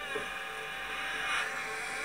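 A steady, eerie drone of several held tones from a horror animation's suspense soundtrack, swelling slightly about a second and a half in.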